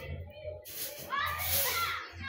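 Indistinct background voices, starting about half a second in, over a low steady hum.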